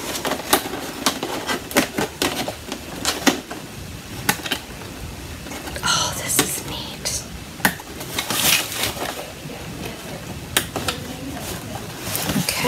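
Scattered light clicks and taps from hands handling a woven wood-splint basket.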